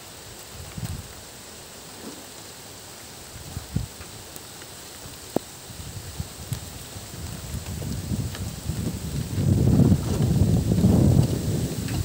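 Wind buffeting a phone's microphone outdoors: a steady faint rush with a few small clicks, swelling into a louder rumbling gust over the last few seconds.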